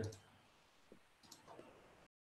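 Near silence, with a few faint, short clicks about a second in and near the end.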